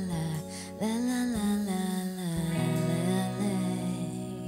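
Live pop-soul band of electric guitars, bass guitar and drums playing the closing bars of a song, with long held melody notes that slide up and then sustain over a steady bass line.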